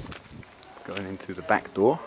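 A person's voice speaking a few short words in the second half, the loudest near the end.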